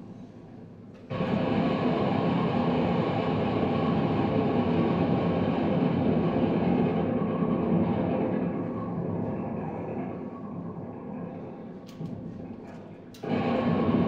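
Violin built from decommissioned firearm parts, bowed hard through an amplifier into a dense, noisy, sustained drone. It cuts in suddenly about a second in and thins out over the following seconds. A couple of clicks come near the end before a loud bowed stroke cuts back in.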